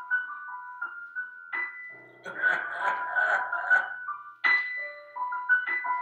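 Keyboard music: a high, chime-like tune of single held notes, with fuller, denser playing about two seconds in and again past the middle.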